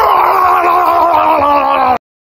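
A man's loud, drawn-out yell on one long held note, its pitch sinking slowly, cut off abruptly at the end.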